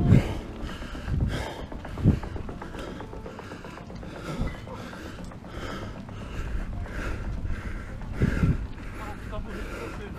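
Bicycle pedalled hard up a steep climb: heavy, rhythmic panting about twice a second, with a few louder grunting breaths, over the clicking of the chain and gears under load.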